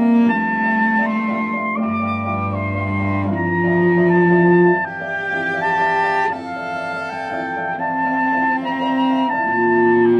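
Soprano saxophone, cello and piano trio playing a slow, peaceful piece: the saxophone carries a melody of long held notes, stepping from note to note about once a second, over sustained cello notes and piano accompaniment.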